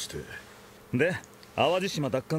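Anime dialogue in Japanese: a man's voice speaks two short phrases, about a second in and near the end, with a quiet gap before them.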